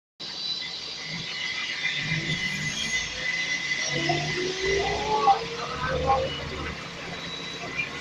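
Interior of a Scania L94UB single-decker bus on the move: engine and running noise with a steady high whine, the engine note rising about halfway through as the bus accelerates. Passengers' voices are heard over it.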